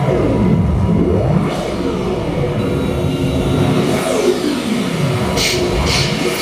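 Live electronic noise music from a tabletop synthesizer setup: dense layered tones that glide down and back up in pitch twice, over a steady low rumble.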